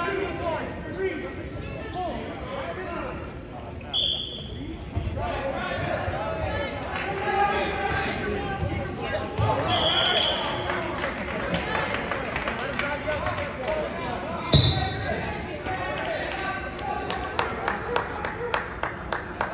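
Voices calling out across a gym during a wrestling bout, with three short blasts of a referee's whistle, about 4, 10 and 14 seconds in. The last blast comes with a heavy thump on the mat, the loudest sound here, and a quick run of sharp smacks follows near the end.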